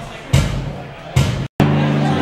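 Live rock band playing in a bar, a drum beat landing about once every 0.85 s. Sound cuts out briefly about a second and a half in, then the band comes back louder with electric guitars ringing out sustained chords.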